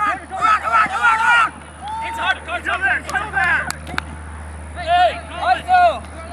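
Raised voices shouting across a playing field in several loud bursts, strongest near the start and again near the end, over a steady low hum.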